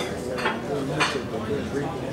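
Dishes, glasses and cutlery clinking in a club audience, with two sharp clinks about half a second and one second in, over low voices.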